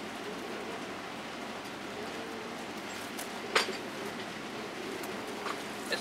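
Steady outdoor background hiss, with one sharp click a little past halfway.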